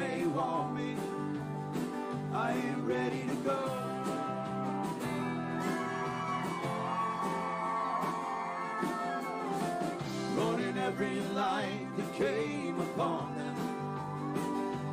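Live country-rock band playing a song: strummed acoustic guitar over drums and keyboard, with a long held note about halfway through.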